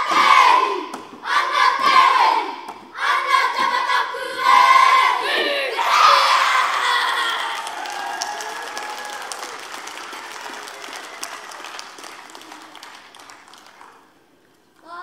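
A children's kapa haka group shouting the closing lines of a haka in unison, in short, forceful phrases that end about six seconds in. An audience then cheers and applauds, and the applause fades out toward the end.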